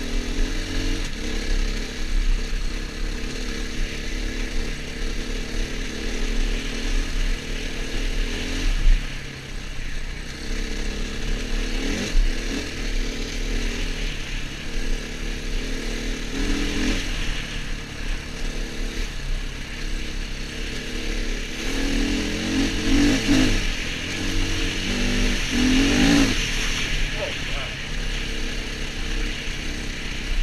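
KTM enduro dirt bike engine under way, its note rising and falling as the throttle is opened and closed and the gears change, busiest in the second half, with wind rushing over the helmet-camera microphone.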